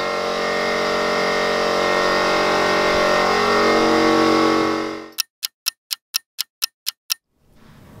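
A pneumatic vacuum coolant-fill tool runs with a steady hiss and drone while it draws coolant into the car's evacuated cooling system; the sound fades out about five seconds in. A ticking-clock sound effect follows: about nine quick, even ticks against dead silence.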